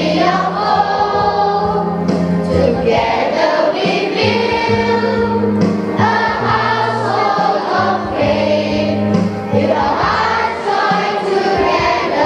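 A young people's church choir of children's voices singing a Christian song together.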